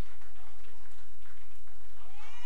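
Audience applauding, an even patter of many hands clapping.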